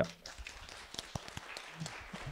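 Quiet applause fading to a few scattered claps, with a faint voice near the end.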